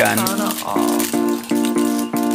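Background music with a steady beat: repeated chords over light rattling percussion.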